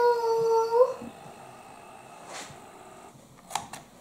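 Handheld electronic label maker printing a label: a steady, even-pitched motor whine that stops about a second in, followed by a couple of short clicks near the end.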